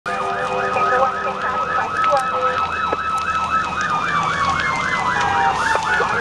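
Emergency-vehicle siren on a fast yelp, rising and falling about four times a second. Over it a second, steady siren tone slowly drops in pitch from about three seconds in.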